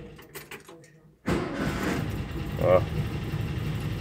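The 1995 VW Kombi Clipper's 1600 twin-carburettor air-cooled flat-four runs down and stops. It starts again on the key just over a second in and settles into a steady idle without throttle.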